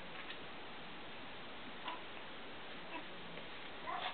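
Steady low hiss with a few faint, scattered light clicks and taps as Cavalier King Charles Spaniel puppies play, one picking up a rope toy.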